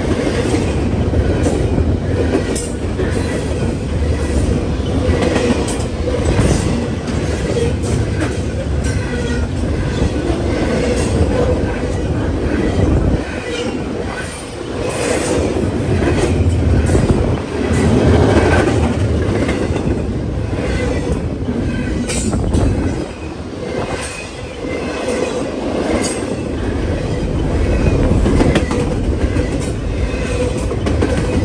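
Double-stack intermodal container train of loaded well cars passing close by, with a loud, steady rumble and the wheels clicking over rail joints, plus brief high wheel squeals. The sound dips briefly twice, about halfway through and again about three quarters of the way.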